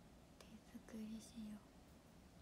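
A woman's voice murmuring a few short, very quiet syllables under her breath, with a couple of small clicks.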